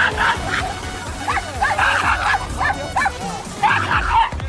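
A dog barking in a string of short, high yips over background music.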